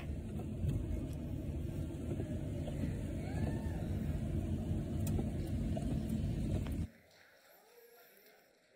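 Low, steady road noise from a car, carried on the soundtrack of a phone video of a rainy road; it cuts off suddenly about seven seconds in.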